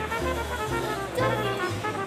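Background music: an instrumental track with a bass line stepping to a new note about twice a second.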